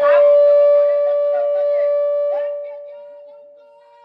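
A long, loud held note at one steady pitch with clear overtones, fading out over the last couple of seconds, with faint voices beside it.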